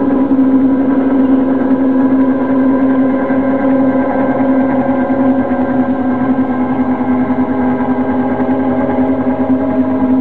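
Sustained electronic sound-design drone: one steady pitched tone with many overtones, holding the same pitch throughout.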